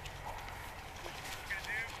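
Faint voices talking over a steady low rumble, with a short burst of speech near the end.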